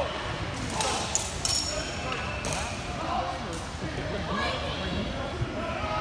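Reverberant hall babble of distant voices, broken by several sharp clacks, a few leaving a brief high metallic ring: steel training longswords clashing in a nearby bout.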